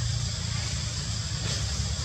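Steady outdoor background noise: a low rumble under a constant high-pitched hiss, with a faint click about one and a half seconds in.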